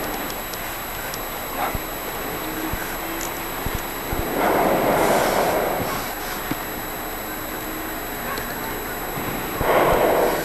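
Rushing roar of a hot air balloon's propane burner firing, one blast of about a second and a half near the middle and another short one at the end, over a steady outdoor hiss.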